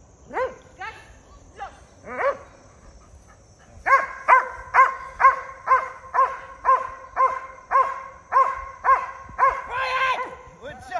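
Dog barking: a few separate barks in the first couple of seconds, then from about four seconds in a steady, rhythmic run of loud barks, about two a second. This is a protection dog barking at the decoy it has just released on a verbal out, guarding him.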